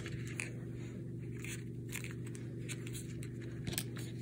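Faint rustles and small scrapes of thick thread being drawn through a knot against a paper book cover, with scattered light clicks and a slightly louder one near the end, over a steady low hum.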